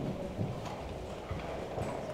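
A few faint, irregular knocks over quiet room tone, about every half second.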